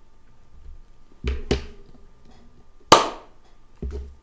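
Four sharp knocks, the third the loudest, each with a short ring.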